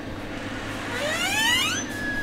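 Door hinge creaking as a door swings open: a long squeak rising steadily in pitch over about a second, ending in a brief steady whine, over a low room hum.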